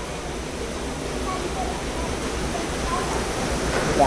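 Steady restaurant background noise: an even hiss of room ambience with faint, indistinct voices in the distance.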